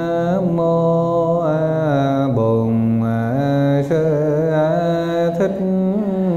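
A man's voice chanting a Vietnamese Buddhist invocation to the Buddha. It moves in long held notes that step slowly from one pitch to the next.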